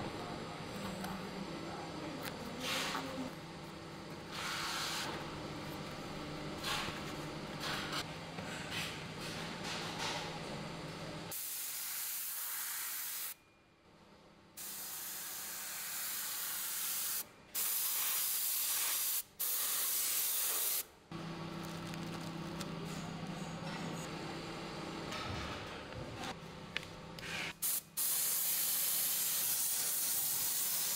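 Hand-held compressed-air spray gun hissing in several bursts of one to three seconds with short breaks between, for about ten seconds in the middle and again near the end. Before it, a steady low workshop hum with light rustling of foam and fabric being handled.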